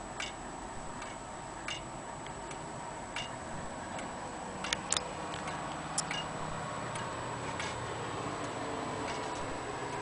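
Antique Vienna regulator wall clock movement ticking: short, sharp ticks of the pendulum escapement at spaced intervals, with a low rumble building in the background in the second half.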